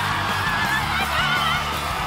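Game-show prize fanfare music playing over studio audience cheering, with a woman's high, wavering scream of excitement about half a second in that lasts about a second.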